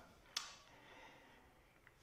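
Near silence: room tone, with one brief faint breath about a third of a second in.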